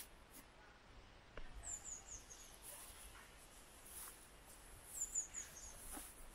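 A small songbird singing faintly: a short phrase of about four high chirps stepping down in pitch, heard twice, a few seconds apart.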